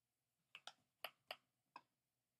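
Five light, sharp taps of a hard object, two close together, then two, then one, spread over about a second and a quarter.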